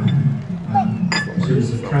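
Murmur of voices in a large room, with one sharp, ringing clink of tableware on the table about a second in.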